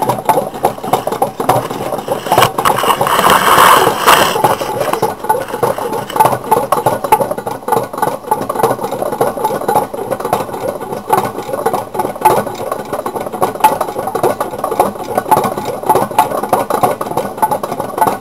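Homemade tin-can Stirling engine running on its alcohol burner, the wire crankshaft and linkages rattling in a steady, rapid rhythm. A brief louder rush of noise comes about three seconds in.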